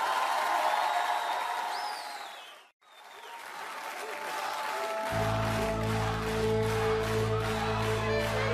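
Studio audience applauding and cheering after a song, with a brief drop to silence nearly three seconds in. The applause comes back and about five seconds in the band's instrumental intro to the next song starts under it, with a steady low note.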